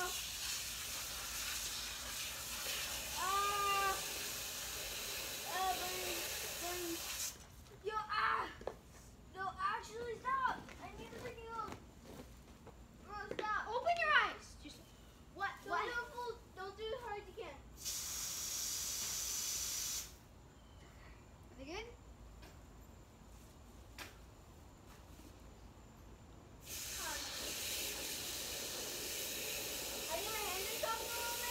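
Water spraying with a steady hiss that cuts off and comes back abruptly several times, with children's voices calling out in the quiet stretches between.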